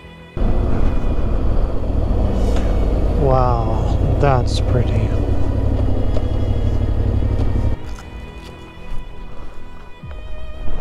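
Yamaha Ténéré 700 parallel-twin motorcycle being ridden on a gravel road, a loud steady rush of wind and engine noise with a strong low rumble. Two short warbling, wavering tones come a few seconds in. The ride noise cuts off suddenly near the end, leaving soft background music and a few light clicks.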